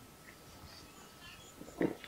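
A person swallowing a mouthful of stout: one short gulp near the end, otherwise quiet.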